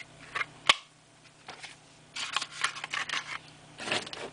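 Hard plastic clicks from a clamshell case being handled and snapped together, the sharpest under a second in. About two seconds in comes a second and a half of crackly rustling of packaging, and another short burst of it near the end.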